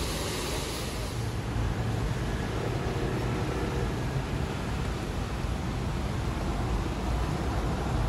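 Fountain water splashing for about the first second. Then, after a cut, the steady low rumble of a city tour bus's engine and road noise as the bus moves through traffic.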